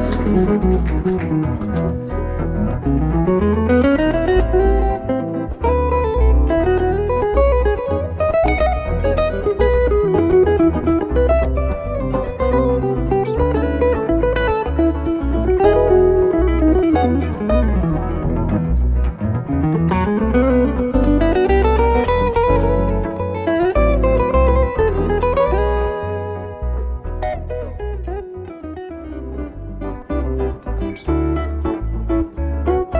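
Brian Moore electric guitar playing live jazz: fast note runs that sweep up and down in pitch every second or two, over a low pulsing bass part. The playing grows softer near the end.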